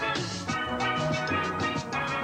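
Steel band playing: many steel pans of different ranges struck rapidly with sticks, ringing pitched notes over a lower pan part in a lively tune.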